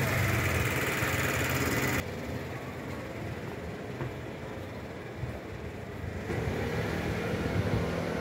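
Street traffic noise with a vehicle engine running close by; about two seconds in the sound drops abruptly to quieter street noise with distant traffic, which grows louder again near the end.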